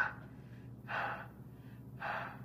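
A man gasping for breath, short heavy breaths about once a second.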